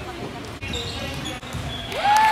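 A basketball bouncing on a hardwood gym floor during a youth game, with voices of players and onlookers echoing in the large hall.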